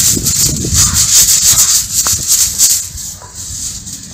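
Small tools scraping and scratching into damp packed sand as a sand sculpture is carved, in a quick, uneven run of rough strokes that eases somewhat after about three seconds.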